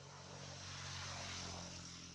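A motor vehicle passing by at a distance. Its engine hum and rushing noise swell to a peak in the middle and then fade away.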